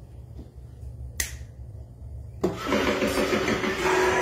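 A sharp click about a second in, then halfway through the Lowe's animatronic keyboard reaper prop suddenly starts playing its song, loud music with a repeating beat over a low steady rumble.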